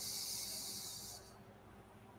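A person hissing breath out through the teeth while tasting a neat, nearly 60% ABV whisky: one high-pitched hiss that starts sharply and fades out after about a second and a half.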